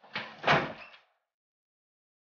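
A door bumping shut with a single heavy thud about half a second in.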